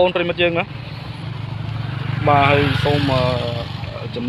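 A motorcycle engine running close by, a low steady hum that grows louder through the middle and eases off near the end, under people talking.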